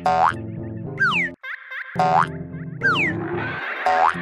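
Playful children's cartoon music with steady notes, overlaid by repeated sliding boing-like sound effects: quick falling glides about once a second, and fast rising sweeps at the start and near the end.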